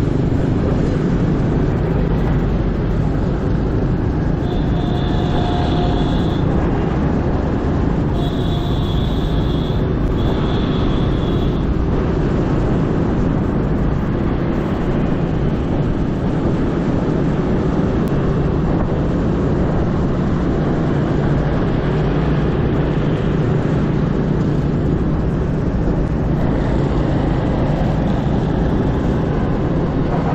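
Motorbike riding along a busy city road: a steady, loud rush of engine, wind and traffic noise. A horn beeps three times briefly, about five, eight and ten seconds in.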